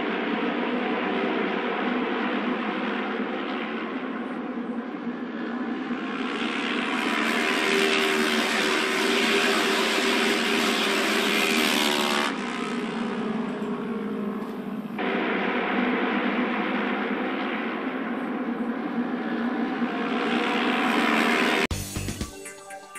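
Japanese auto race motorcycles, several 600cc parallel-twin engines running together as they lap the asphalt oval on a trial run. The drone swells loudest about halfway through as the bikes come nearer, and breaks off abruptly a couple of times.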